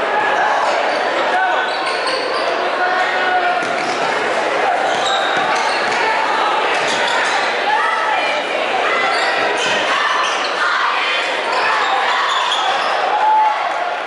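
Basketball dribbling on a hardwood gym floor under the steady chatter and shouts of a crowd, echoing in a large gym.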